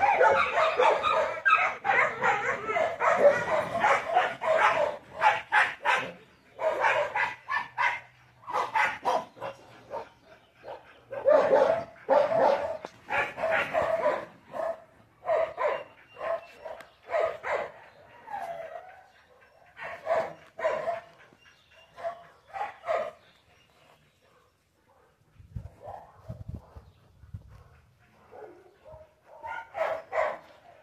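A dog barking over and over, in close runs of barks at first, then in shorter spaced bursts that grow fewer and fainter toward the end.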